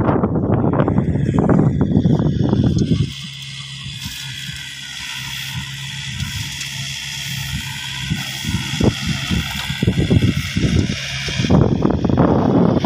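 A farm tractor's engine running steadily at a distance. Wind buffets the microphone in loud gusts for the first few seconds and again near the end.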